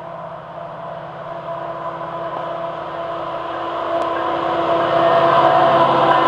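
Diesel freight locomotives approaching with their engines running. The drone grows steadily louder as they close in and reaches the camera near the end.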